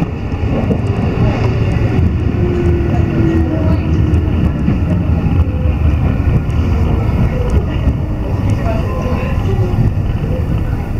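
Tokyu Oimachi Line commuter train heard from inside the carriage: a steady low rumble of wheels and running gear as it pulls alongside a station platform.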